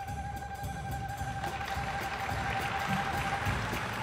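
Live small jazz band, with a bowed double bass holding one long high note over a drum pulse. Near the end the note steps up and slides higher, and a hiss swells and fades around the middle.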